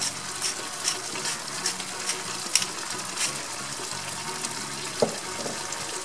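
Chopped vegetables sizzling in oil and a little water in a frying pan over a gas flame, with scattered crackles. A single short knock about five seconds in.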